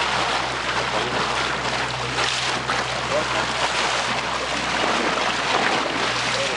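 Steady wind noise on the microphone and water lapping around a small open boat at sea, with a low steady hum underneath.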